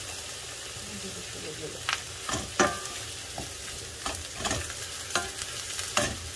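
Sliced vegetables frying in oil in a stainless steel pan with a steady sizzle, stirred with a wooden spoon that knocks against the pan several times in the second half.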